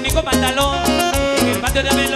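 A live Latin dance band, a cumbia orchestra, playing: timbales and congas keep a steady beat under bass and melodic lines.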